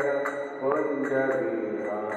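A man sings a Hindu devotional chant with long, gliding melodic lines. A low steady drone runs beneath, and a few sharp metallic clicks ring out high.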